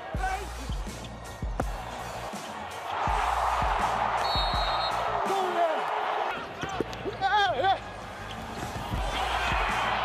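Live basketball arena sound: a ball bouncing on the hardwood court with short squeals, and the home crowd roaring in two swells, about three seconds in and again near the end.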